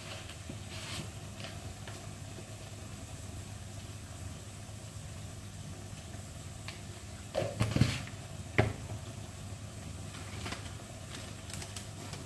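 Steady low hum with a faint hiss in a small kitchen, broken by a few light knocks and clatters of a spoon and spice jar about seven and a half to eight and a half seconds in.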